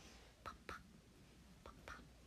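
Near silence, broken by a woman's faint whispered syllables: two short ones about half a second in and two more near the end.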